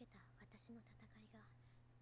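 Faint speech from an anime character's dialogue, over a steady low hum.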